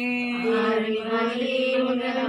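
Voices singing a Telugu devotional harati (aarti) song, a slow chant drawn out in long held notes.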